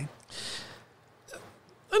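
A short breathy huff of laughter, then a fainter breath about a second later. A man's voice comes in right at the end.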